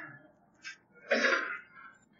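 A person sneezing once: a brief sharp intake, then one half-second burst.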